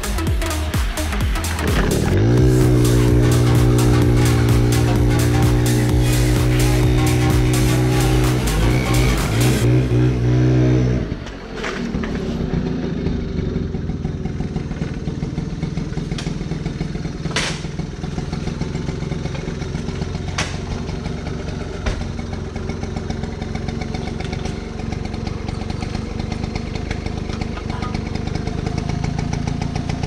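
Background music with a steady electronic beat for about the first eleven seconds; then the 1978 Honda Express moped's small two-stroke single-cylinder engine running steadily, with a few sharp clicks.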